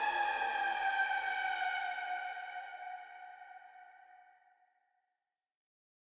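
Final held note of a dramatic electronic music track, sinking slightly in pitch as it fades out, ending in silence about four and a half seconds in.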